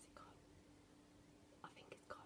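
Near silence: quiet room tone with a faint steady hum, broken by a few faint, brief whispered or breathy vocal sounds just after the start and again near the end.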